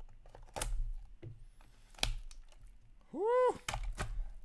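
Shrink-wrap on an Upper Deck Clear Cut hockey card box being slit and the cardboard box opened: a few sharp crackles and snaps. Near the end, a short vocal exclamation that rises and falls in pitch.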